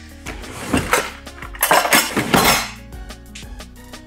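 Stainless steel pot clinking and scraping as it is handled and set down on a tiled countertop: a few light knocks about a second in, then a longer clattering scrape lasting about a second.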